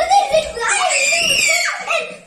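Children's voices, then a child's high-pitched scream in rough-and-tumble play, held for about a second.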